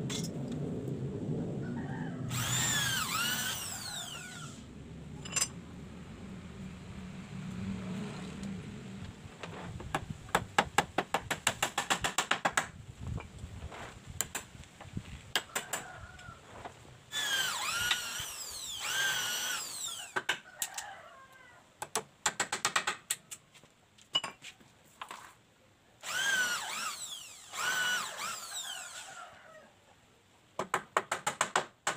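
Cordless drill running in three short bursts of a few seconds each, its motor whine dipping and rising in pitch as it loads up working into the wooden frame. A quick run of sharp clicks comes about a third of the way in.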